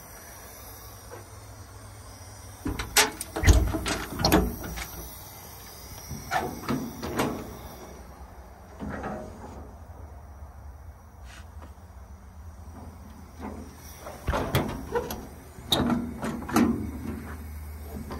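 Service-truck body compartment doors and their latches being opened and shut: a scattered series of clunks, clicks and knocks, the loudest about three to four seconds in and another cluster near the end.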